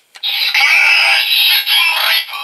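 Bandai DX Sclash Driver toy transformation belt powering on: a click of its switch, then its electronic start-up sound effect playing loudly through its small built-in speaker, held steady for nearly two seconds.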